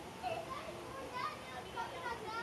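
Indistinct chatter and calls of children's voices, with no clear words.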